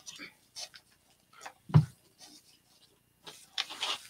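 Rustling and scraping of a deco-mesh and ribbon wreath being handled as a chenille-stem tie is twisted tight on its frame, in short scattered scratches. There is one short low thump a little under two seconds in, and a busier rustle near the end as the wreath is lifted.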